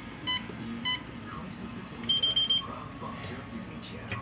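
Electronic hotel-room safe keypad beeping as the code is punched in: single short beeps with each key press, twice in the first second, then a quick run of about seven higher, shorter pips around two seconds in.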